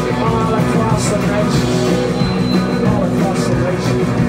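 Live rock band playing: distorted electric guitars and drums with cymbals about twice a second, and a lead singer singing into the microphone over them.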